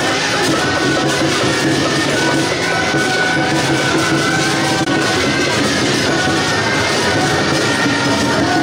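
Loud temple-procession band music: high, held wind-instrument notes that shift in pitch over a dense, continuous clatter of drums, gongs and cymbals, the accompaniment of a lion dance.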